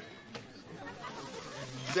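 Faint background crowd chatter, a low murmur of voices with no clear words, with a single faint click about a third of a second in.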